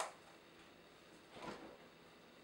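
Quiet kitchen room tone with one faint, brief, soft noise about one and a half seconds in.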